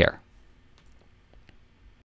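A man's voice finishes its last word, then faint room tone with a few soft clicks in the second half.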